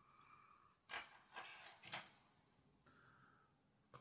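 Near silence, with a few faint soft rustles as tying thread is wound on to secure a hackle on a fly held in a vise.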